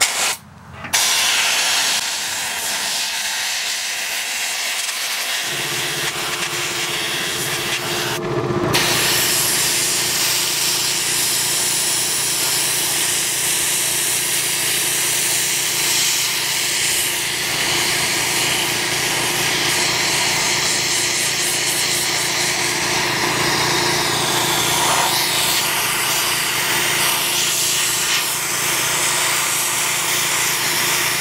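Handheld spot sandblaster gun blasting abrasive grit against a rusty steel truck frame: a steady hiss of compressed air and grit that breaks off briefly about eight seconds in. A steady low hum joins about five seconds in.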